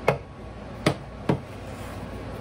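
Three sharp knocks of kitchenware: a glass measuring cup and a spatula knocking against a plastic mixing bowl and a glass stovetop as sugar is emptied in and the bowl is taken up for stirring. The first knock comes right at the start, the other two close together about a second in.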